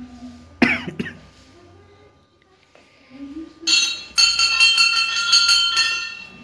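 A cough about half a second in, against faint murmuring voices. From about three and a half seconds a small metal bell is rung rapidly, several strikes a second, with a bright ringing tone.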